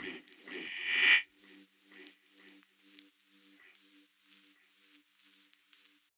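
The tail end of a minimal techno track: a synth sound swells for about a second and cuts off abruptly. It leaves faint, short low synth notes repeating in an even pattern and fading toward silence.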